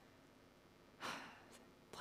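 Near silence, broken about a second in by one short audible breath from the speaker into her microphone before she goes on talking.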